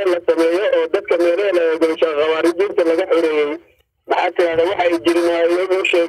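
Speech only: a man talking in Somali over a phone line, with a brief pause about two-thirds of the way through.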